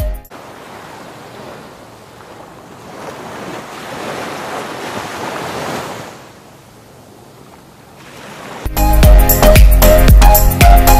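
Small waves washing up on a sandy beach, the surf swelling and then fading about midway through. Music stops at the very start and comes back loudly near the end.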